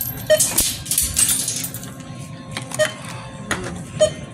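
Grocery items clattering and rustling as they are handled on a checkout counter, with three short checkout beeps: one early, one near three seconds and one at the end. Store background music plays underneath.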